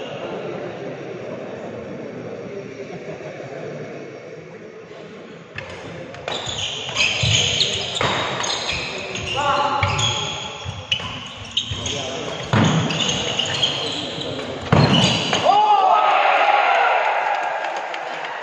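Badminton rally in a large indoor hall: a quick run of sharp racket strikes on the shuttlecock and shoe squeaks on the court, starting about five seconds in, over a murmur of voices. A loud burst of voices comes near the end as the rally finishes.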